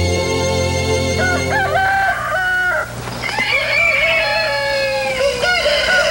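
A rooster crowing twice, each crow about two seconds long, after a held orchestral chord dies away in the first two seconds.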